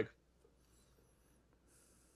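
Near silence: a pause between speakers, with faint high-pitched rustling twice.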